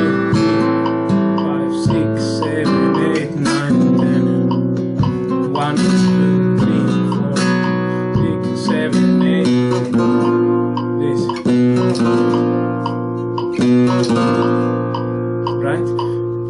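Nylon-string flamenco guitar played in solea por buleria compás with fast rasgueado strums, chord after chord throughout, working through a chromatically descending remate.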